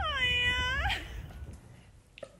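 A young woman's voice holding one long high wail that slides up at the start and falls away at the end, about a second long, over a low background rumble.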